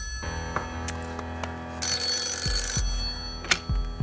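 The Banker's telephone ringing once for about a second, starting about two seconds in, over steady, tense background music with a low drone.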